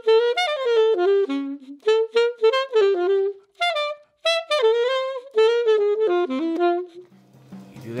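Unaccompanied alto saxophone playing fast jazz phrases, one quick note after another. It pauses briefly about halfway and stops about a second before the end.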